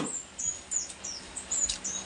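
Small bird chirping: a run of short, high, falling chirps, about four a second.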